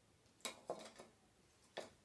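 Three short, sharp clicks or taps against near silence: one a little before halfway, a second just after it that trails on briefly, and a third near the end.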